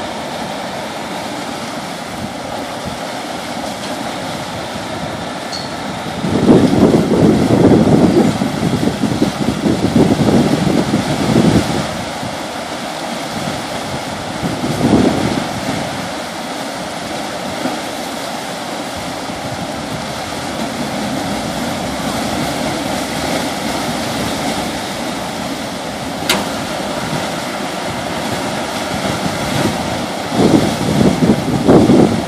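Steady rushing of water churned by the S.S. Badger's propeller wash as the ferry backs into its slip. Louder rushing surges come about six to twelve seconds in and briefly again around fifteen seconds.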